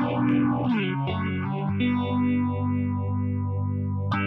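Electric guitar, a Fender Telecaster, played through a Roland Micro Cube GX practice amp on its Brit Combo amp model with the phaser effect. Chords are strummed and change about a second in, then one chord is held and rings on while the phaser sweeps through it.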